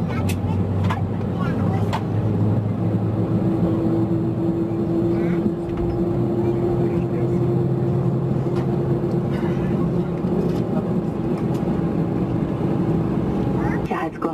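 Airbus A320 jet engine starting while the aircraft taxis, heard from a cabin seat by the wing. A steady whine sets in a couple of seconds in and holds over a low, even rumble.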